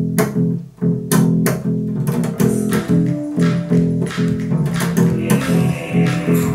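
Instrumental music led by a large acoustic bass plucked in a repeating low line, with sharp percussive hits over it. More instruments come in near the end.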